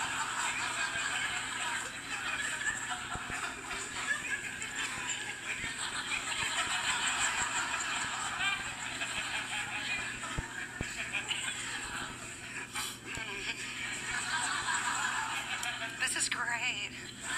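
Studio audience laughing and cheering through an on-air awkward pause, as a steady crowd noise that never stops, heard through a television's speaker.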